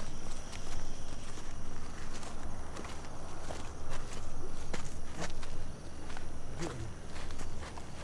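Footsteps walking over dry bare dirt ground, irregular scuffing steps, with a faint steady high-pitched tone underneath.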